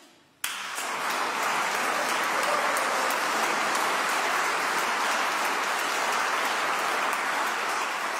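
Audience applauding, breaking out suddenly about half a second in and holding steady.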